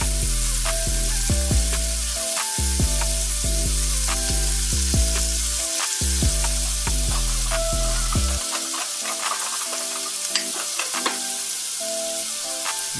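Jumbo shrimp frying in hot bacon grease in a skillet: a steady sizzle. Background music with a bass line plays under it, and the bass drops out about eight and a half seconds in.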